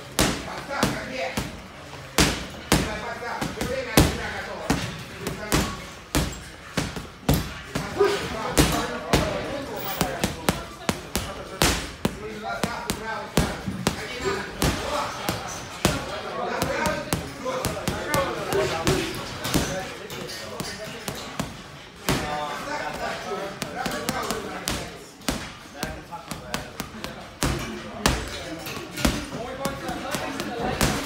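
Boxing gloves punching a hanging heavy bag: sharp, irregular thuds in quick combinations of two to four blows, with short pauses between them.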